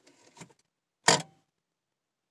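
A single sharp click about a second in, preceded by a few faint ticks: the 2001 Subaru Outback's automatic shifter clicking over in Park as the brake pedal is released. It is the sign that the repaired shifter now engages Park fully, so the key can be taken out.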